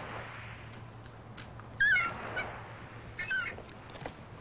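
Two short high-pitched gull calls, each falling at its end: one about two seconds in and a second, fainter one about a second later. A faint steady hiss runs underneath.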